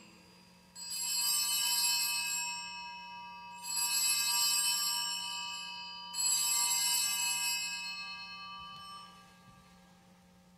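Altar bell rung three times, about two and a half seconds apart. Each ring is a bright, high chime that slowly dies away. It marks the elevation of the chalice at the consecration.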